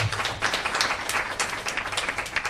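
Audience applauding: a round of clapping from many hands.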